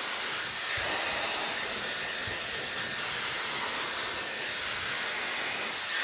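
Dyson Airwrap blowing air through its drying attachment on its highest fan and heat setting: a steady rushing hiss.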